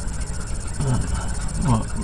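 A man's voice says a couple of short words over a steady low rumble and a faint, steady high-pitched whine.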